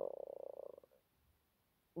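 A woman's drawn-out hesitation 'anō…' in a creaky, croaking voice, trailing off within about a second, then near silence.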